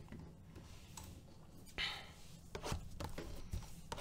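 Faint handling of a cardboard trading-card blaster box on a table: a brief rustle or scrape about two seconds in, then a few light taps and clicks.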